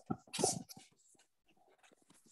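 Choppy, scratchy bursts of broken-up audio on an online call, the loudest in the first second, then faint crackles. The caller's connection is cutting out, so her speech is not coming through.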